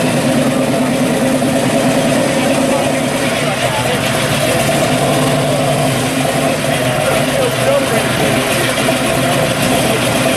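1966 Chevrolet Chevelle Super Sport's V8 running steadily at low speed as the car rolls slowly past.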